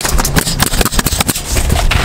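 Pneumatic coil roofing nailer, run off an air compressor hose, firing nails into asphalt shingles in quick succession, several sharp shots a second.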